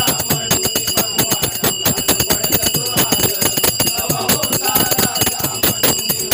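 Bhajan accompaniment: brass taal hand cymbals struck in a fast, steady rhythm, ringing continuously, over hand-drum strokes.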